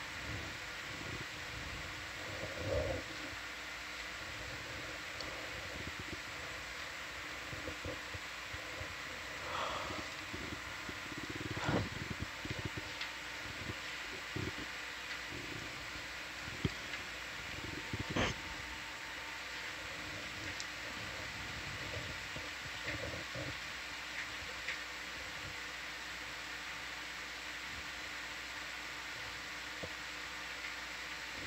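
Steady background hum and hiss of electronic equipment, with a few faint knocks and clicks scattered through it, the sharpest about twelve and eighteen seconds in.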